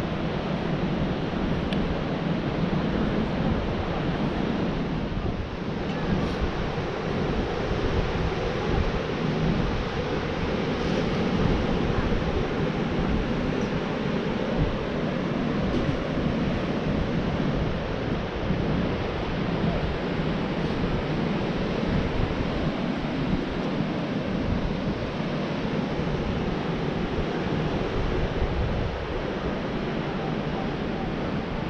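Steady wind rushing over the microphone, mixed with the wash of surf breaking on the beach below.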